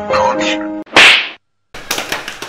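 Light keyboard backing music with held notes stops just under a second in. One loud, sharp, noisy hit comes at once and dies away within half a second. A moment of dead silence follows, then room noise returns.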